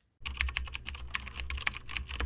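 Rapid computer-keyboard typing: a quick, dense run of key clicks that stops abruptly.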